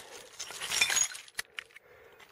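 Shards of shattered ceramic floor tile clinking together as the broken pieces are handled, with a single sharp click about one and a half seconds in.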